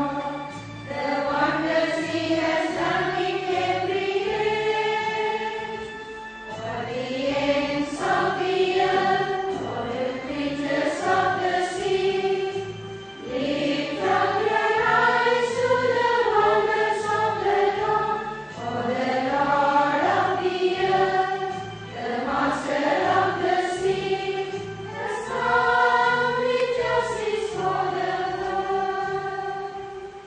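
A choir singing a hymn in phrases a few seconds long with short breaks between them, the last phrase fading out at the end.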